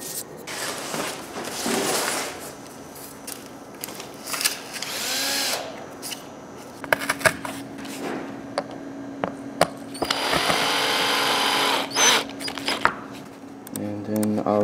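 Cordless drill running in three short bursts, the longest of about two seconds near the end, driving screws through cardboard into the wooden CNC router bed, with handling clicks between the runs.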